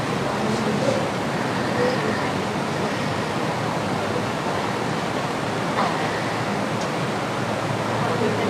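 Steady rushing noise with faint voices now and then.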